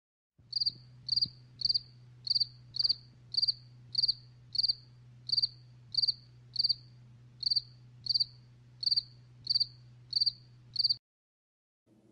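Cricket chirping sound effect: evenly spaced high chirps, a little under two a second, over a low steady hum, cutting off suddenly near the end. It is the stock 'crickets' gag marking an awkward silence after an unanswered question.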